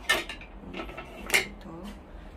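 Two sharp knocks of hard plastic items being handled, about a second and a quarter apart, the second the louder.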